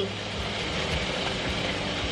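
Chicken, mushrooms and onion sizzling in a frying pan, a steady even hiss, while a wooden spatula stirs them.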